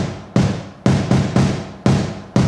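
Music track with a heavy drum beat, about two strong hits a second.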